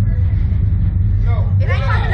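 Steady, loud low rumble of running machinery, with a woman's voice coming in near the end.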